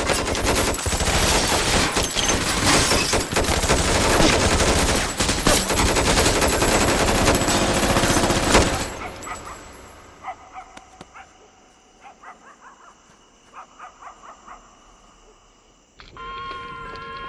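Sustained rapid gunfire, a dense loud rattle of shots, which dies away about nine seconds in. Then comes a quiet stretch with a few faint short pitched calls.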